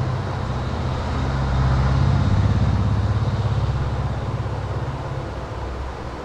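A low, pulsing engine hum from a motor vehicle. It grows louder about a second in, is strongest around the middle and fades away near the end, as when a vehicle passes by.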